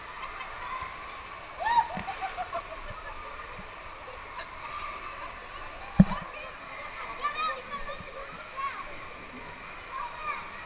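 Water running and splashing at the bottom of a water slide, with children's voices and calls coming and going over it. A single sharp knock about six seconds in is the loudest sound.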